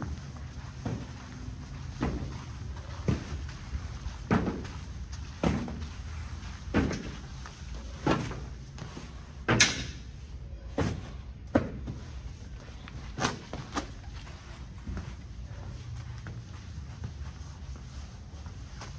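A series of about a dozen heavy thuds of gym equipment, irregularly spaced roughly a second apart, the loudest a little under ten seconds in, then thinning out near the end.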